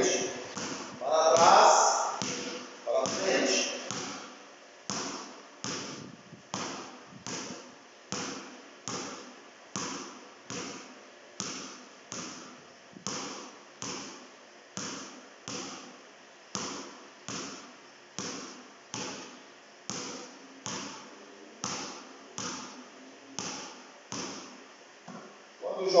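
Basketball bounced on a concrete floor in a steady rhythm, a little more than one bounce a second, each bounce echoing in the hall. The ball is dribbled forward and back, switching hands.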